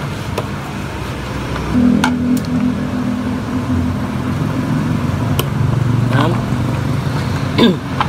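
A screwdriver working at the plastic battery cover in a Honda Beat FI scooter's floorboard, giving a few light clicks and taps, over a steady low background hum.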